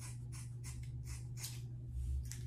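Scissors snipping through a lock of hair, a quick run of short crisp cuts, about three or four a second.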